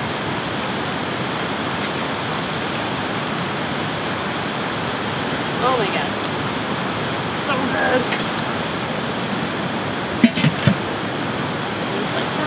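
A steady rushing hiss, with a short cluster of metallic clanks a little after ten seconds in as the lid of the charcoal kettle grill is set on.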